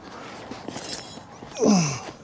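A man's voiced sigh or groan of frustration about a second and a half in, one short sound falling steeply in pitch, after a low, quiet background with faint rustling.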